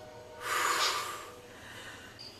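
A person's loud breath out, a sigh of relief, starting about half a second in and fading within a second.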